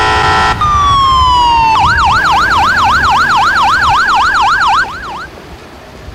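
Ambulance's electronic siren: a steady horn-like blast, then a tone falling in pitch, then a rapid yelp sweeping up and down several times a second, which stops about five seconds in.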